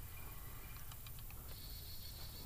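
Faint ticking and clicking of a fishing reel as the soft-plastic lure is reeled back to the kayak, over a low steady background rumble. A faint, high, steady tone comes in about halfway through.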